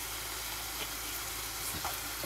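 Eggs and mushroom fried rice frying in two pans on a gas hob, a steady sizzle.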